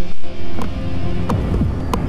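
TV channel 'coming up' bumper sound design: a deep bass hit at the start, then a steady low hum with three sharp ticks and a short falling sweep.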